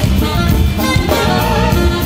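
Live jazz-funk band playing: an alto saxophone holds melody notes over electric bass and a drum kit groove.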